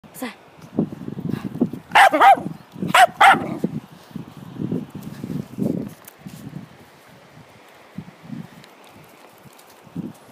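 Jack Russell terrier barking in two quick pairs of barks, about two and three seconds in, amid softer low rumbling.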